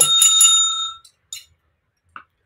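A bright bell ding sound effect marking the start of a new quiz round. It rings for about a second and fades away.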